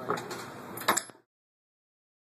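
Rolling noise from a horse shipping container being pushed over a ball-bearing floor, with one sharp knock about a second in. The sound then cuts off abruptly into silence.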